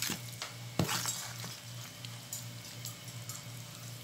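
A plastic-gloved hand scraping and knocking against a plastic bowl while gathering up chili-coated kimchi: a few sharp knocks in the first second and a half, then lighter ticks and scrapes. A steady low hum runs underneath.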